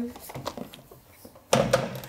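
Microwave oven door being shut, a sudden clunk of the door and its latch about one and a half seconds in that dies away quickly.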